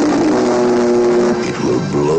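Film-trailer soundtrack: sustained music chords over a loud rushing sound effect.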